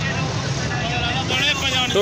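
Busy market street noise: a steady low rumble, with people talking close by from a little past halfway.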